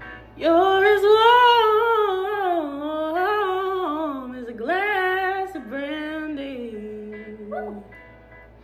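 A woman singing a long, drawn-out vocal run that slides up and down in pitch, with two short breaks about halfway through, over a soft country backing track.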